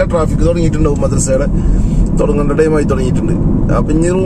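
A man talking inside a car's cabin, over a steady low rumble of engine and road noise from the car he is driving.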